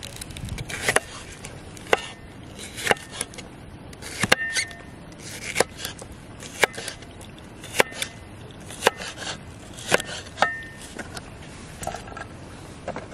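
Kitchen knife slicing a red pepper on a bamboo cutting board: the blade knocks down onto the board about once a second, with soft cutting and rustling in between. A few of the knocks carry a short ringing tone.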